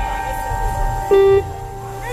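Live reggae band playing, with a long held tone and a short, louder note about a second in over the bass.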